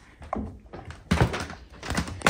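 A series of dull thunks and knocks, the loudest a little after one second in and another near the end.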